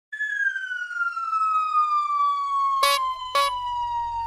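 Cartoon sound effect for a flying saucer coming down: a single whistle-like tone gliding slowly down in pitch. Two short sharp clicks come about half a second apart near the end, over a low rumble.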